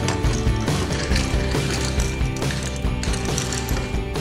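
Small plastic toy car's gear motor ratcheting with rapid clicking as the car is pushed along a table.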